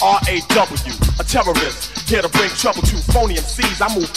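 Old-school hip hop track: a rapper delivering a verse over a beat with a heavy bass line.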